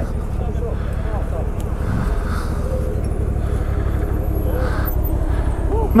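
CFMoto 1000 ATV's V-twin engine running steadily at low revs as the quad crawls up a steep dirt slope.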